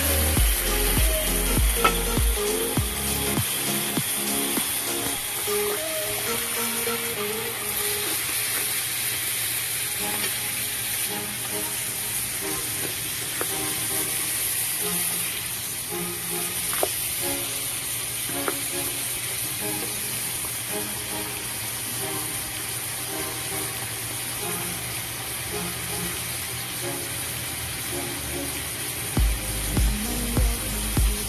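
Chicken pieces sizzling steadily as they fry in hot oil in a pan, stirred now and then, under background music with a bass beat that drops out after about three seconds.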